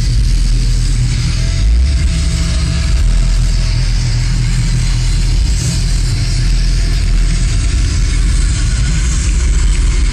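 Heavy metal band playing live: distorted guitars, bass and drums, with a dense, booming low end, picked up from within the crowd.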